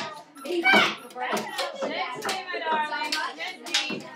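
Children's voices chattering and calling out in a classroom, with one high, wavering voice near the middle and a few sharp knocks in between.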